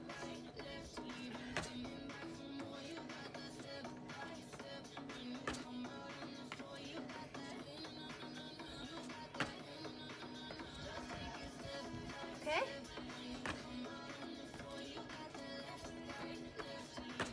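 Music playing quietly, with a soft thump about every four seconds as trainers land jump squats on a rubber exercise mat.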